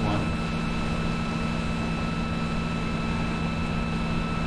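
Steady background hum and hiss on the recording, with a low hum and a few faint steady high whine tones, unbroken throughout.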